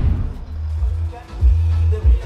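Music with a heavy, pulsing bass beat playing through the BMW X5's Harman Kardon sound system.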